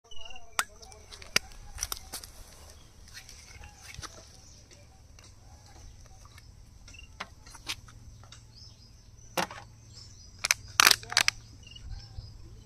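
Sharp clicks and knocks from handling a small glass liquor bottle: its screw cap being twisted open, then the bottle and a plastic cup set down on a steel tray, with the loudest clicks near the end.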